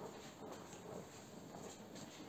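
Faint steady rushing hiss of an acetylene torch burning without oxygen, a sooty carburising flame laid on aluminium sheet to blacken it with carbon before annealing.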